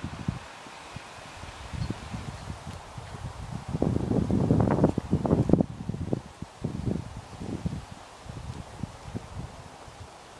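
Irregular rustling and low, gusty rumbling on the microphone, loudest from about four to five and a half seconds in.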